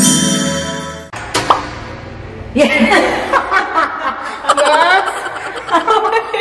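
The last second of an intro jingle with bell-like chimes, cut off abruptly, then a sharp click. After that a woman laughs and chatters.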